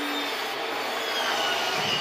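Electric power tool cutting into cedar board, running steadily.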